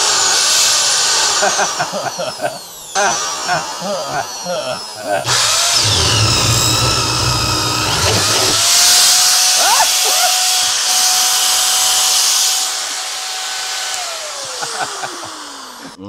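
A 120-volt Master Mechanic corded drill running on 208 volts, overdriven and spinning fast with a high whine. About five seconds in, its 1-1/4-inch paddle bit bites into a wooden block and chews through it for about three seconds; then the motor spins free at a steady pitch and winds down, falling in pitch, near the end.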